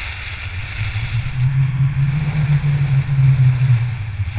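Wind buffeting an action camera's microphone at skiing speed, a low rumble that grows louder about a second in, over the hiss of skis carving groomed snow.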